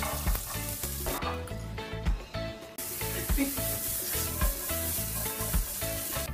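Diced zucchini sizzling as it fries in hot oil on a tempering of mustard seeds, curry leaves and green chillies, stirred in the pan. The sizzle eases for a moment about a second in, then comes back stronger.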